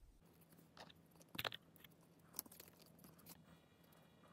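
Near silence with a few faint short clicks and rustles of cardboard model parts being handled, the loudest about a second and a half in.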